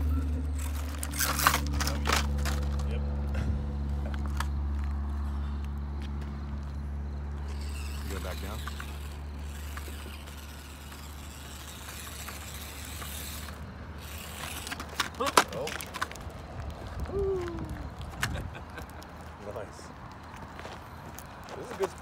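Small electric RC crawler (Axial SCX24) grinding slowly up a steep dirt slope in low gear: a steady low motor-and-gear drone that fades about halfway through, with sharp knocks and scrapes of tires and loose dirt, loudest about a second and a half in, again at two seconds, and around fifteen seconds.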